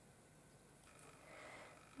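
Near silence: room tone, with a faint soft rush in the second half.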